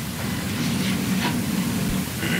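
Steady hiss of courtroom room noise picked up by the microphones, with a low hum and a few faint soft rustles.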